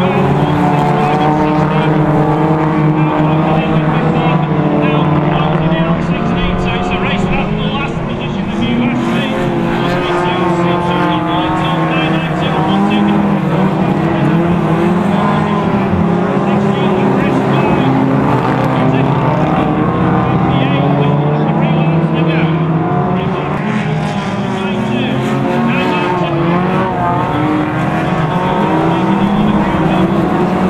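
Several hot rod race cars' engines running hard in a pack, a continuous loud drone that rises and falls in pitch as the drivers accelerate and lift through the bends.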